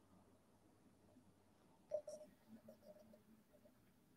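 Near silence: faint room tone, with one brief click about two seconds in and a few fainter ticks after it.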